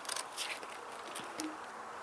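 Faint rustling and a few light clicks as the straps and metal frame of a homemade exoskeleton suit are handled, mostly in the first half-second.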